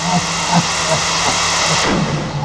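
A loud, steady hiss of white noise laid over synth music, whose repeating pitched notes carry on faintly beneath it; the hiss cuts off suddenly near the end.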